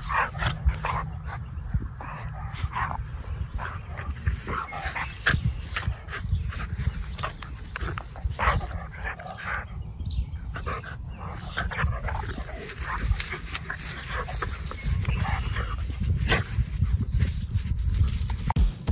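Two dogs play-fighting, with many short, irregular dog vocalizations through the scuffle over a steady low rumble.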